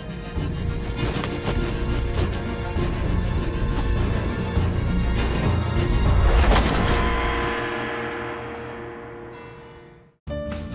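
Dramatic soundtrack music with held notes, swelling to a loud peak with a deep boom about six and a half seconds in, then fading away near the end.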